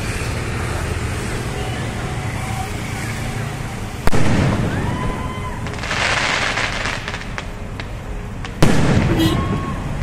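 Aerial fireworks: two loud bangs about four and a half seconds apart, each followed by a long echoing tail, with a spell of dense crackling between them as a shell's sparks go off.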